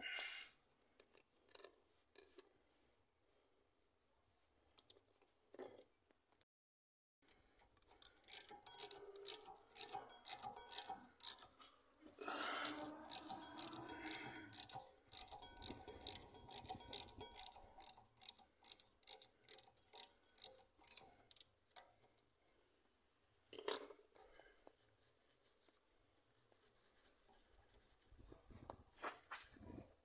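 Hand ratchet worked in short, even strokes, about two or three clicks a second for roughly fourteen seconds, undoing a 5 mm hex bolt that holds the electronic parking brake motor to the rear brake caliper. A few scattered knocks of tools on metal come before and after.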